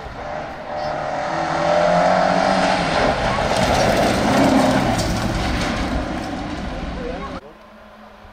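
Volvo 240 rally car's engine revving hard as it drives through a corner and past, its note climbing, with heavy tyre and road noise. The sound cuts off suddenly about seven seconds in.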